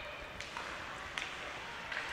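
Ice hockey play in an arena: a steady hiss of skates and building noise, with a few sharp clicks of sticks and puck.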